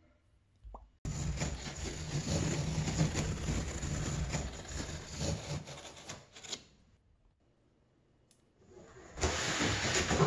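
Utility knife slicing along the bottom edges of a corrugated cardboard box: a rough, scraping cut for about five seconds that stops short of seven seconds in. Rough cardboard scraping starts again near the end as the box is lifted off the cabinet.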